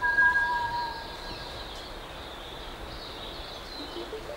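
A bird's call of two long, pure whistled notes, one high and held steady, the other lower and falling slightly, both fading out within the first two seconds, over a steady high-pitched background. A call heard right after kōkako playback, which the observers think might have been a South Island kōkako answering.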